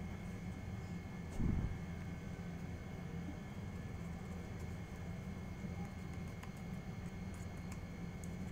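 Steady low background rumble, with one short dull thump about a second and a half in and a few faint clicks near the end.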